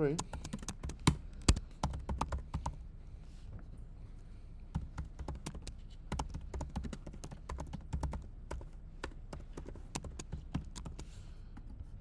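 Typing on a laptop keyboard: a steady run of irregular keystrokes, with a few louder clacks in the first couple of seconds.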